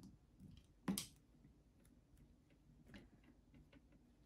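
A few small clicks and taps from painting tools being handled at a desk, the sharpest about a second in, with fainter ticks near the end; otherwise near silence.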